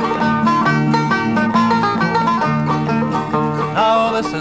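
Banjo and acoustic guitar playing a quick picked instrumental break between sung verses of a bawdy folk song.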